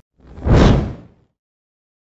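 A single whoosh sound effect for an on-screen logo reveal, swelling quickly and fading out within about a second.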